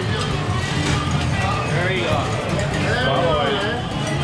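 Restaurant background music playing under a group's voices, which grow livelier about halfway through.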